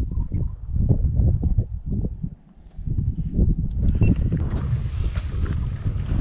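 Wind buffeting the microphone, an uneven low rumble with a brief lull about two and a half seconds in.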